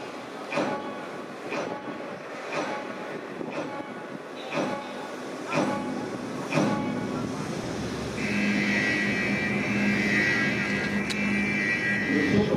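Show sound effects over loudspeakers: a sharp pulse about once a second, then from about eight seconds in a steady horn-like tone that holds to the end.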